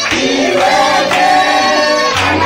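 A choir of voices singing together with music.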